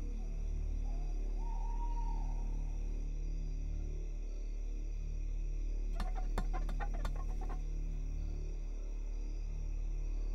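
Dark, sustained horror-film underscore: a steady low drone with faint high tones, broken about six seconds in by a quick run of sharp clicks lasting a second or so.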